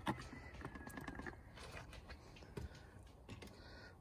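A plastic oil funnel lifted out of the engine's oil filler neck: one sharp click at the start, then faint light ticks and handling noise.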